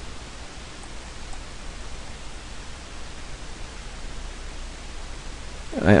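Steady hiss with a low hum underneath: the background noise of the narration microphone, with nothing else sounding.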